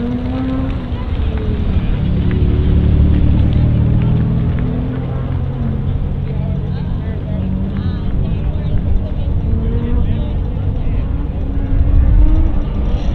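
Car engine revving up and down as it is driven through an autocross cone course, its pitch rising and falling with throttle and shifts.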